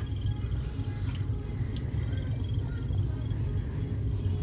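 Steady low rumble of shop room noise with faint music in the background.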